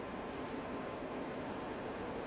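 Steady low hiss with a faint high tone under it, and no distinct events: the background noise of a live broadcast line.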